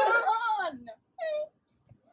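A girl's voice giving a drawn-out, playful wail that rises slightly and then falls in pitch, followed by a short vocal sound a moment later.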